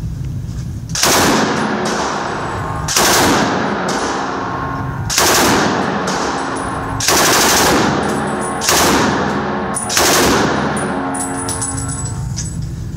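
An M1918 Browning Automatic Rifle (.30-06) firing full-auto in six short bursts, roughly two seconds apart, each ringing and reverberating off the walls of an indoor range.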